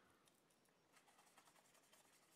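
Near silence, with faint soft ticks of a paintbrush working paint in a plastic palette well.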